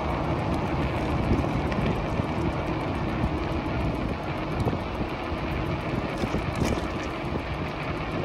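Steady rush of wind on the microphone and tyre noise from an e-bike rolling along asphalt.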